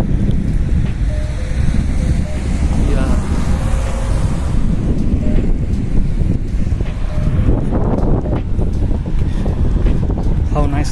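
Wind buffeting the camera's microphone, a loud, steady low rumble.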